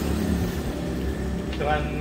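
Low, steady rumble of a motor vehicle's engine running, with a man's voice starting again near the end.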